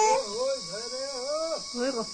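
Steady high-pitched insect chirring, crickets by the sound of it, under a woman's voice talking in short phrases.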